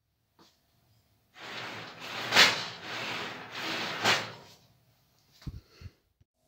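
A laser cutter's lift table sliding along its guide rods as it is pulled up, a rubbing slide of about three seconds that swells twice, then two short knocks near the end. The rod mounts have been loosened so the movement pulls the out-of-parallel rods into line.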